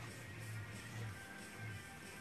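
Quiet background music with steady low notes.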